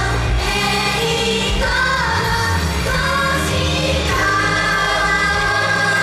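Live J-pop idol-group song: several voices singing together over loud backing music, ending on a long held note from about four seconds in.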